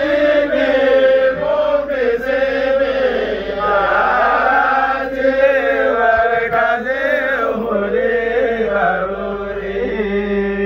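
Group of young male voices chanting a song together in unison, a steady melodic chorus with no break.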